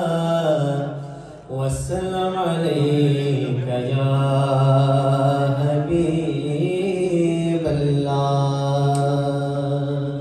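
A man's unaccompanied devotional chanting in Arabic style, sung into a microphone over a hall PA in long, drawn-out melodic phrases. There is a brief pause for breath about a second and a half in.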